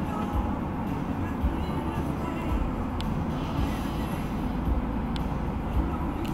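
Steady low rumble of a vehicle, with a faint radio broadcast of voice and music underneath.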